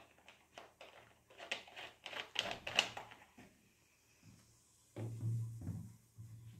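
Thin plastic bottles being handled as a tube and cap are fitted, giving a run of faint crackling clicks that cluster most densely around two seconds in. A brief low rumble follows near the end.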